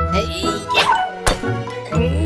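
Cartoon background music under a character's wordless, animal-like vocal sounds that glide and fall in pitch, with a sharp hit a little past halfway.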